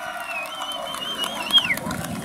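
A long, high whistle that wavers in pitch, warbles near the end, swoops up and then falls away, over crowd voices and shouts.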